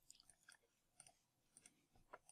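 Near silence with a few faint computer-mouse clicks, some in quick pairs, as brush strokes are painted with the mouse.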